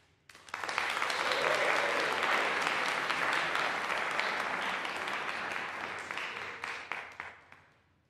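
Audience applauding: the clapping starts suddenly just after the start, is fullest in the first few seconds, then thins out and dies away near the end.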